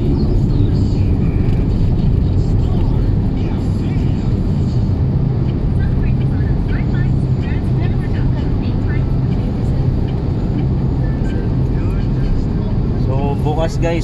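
Steady low rumble of engine and road noise inside a moving car's cabin, with faint voices and music underneath.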